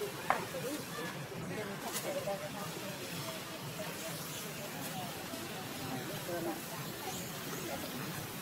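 Indistinct background chatter of voices over a steady outdoor hiss, with one sharp click just after the start.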